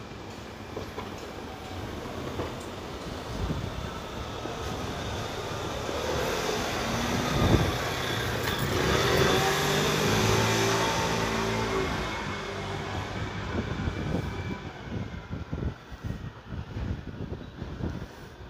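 A motor vehicle passing close by on the street: its engine and tyre noise grow louder to a peak about halfway through, then fade away.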